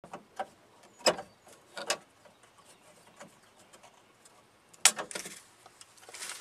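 A door handle assembly being pried with a screwdriver and worked loose from a pickup's door: a handful of separate plastic-and-metal clicks and knocks. The loudest comes near the end, followed by a brief scuffing as the handle comes free.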